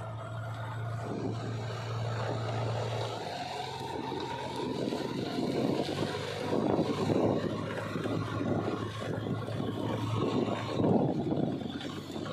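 JCB 3DX backhoe loader's diesel engine running as the machine drives along the road. It starts as a steady hum, and from about four seconds a louder rapid clatter takes over as the loader comes close.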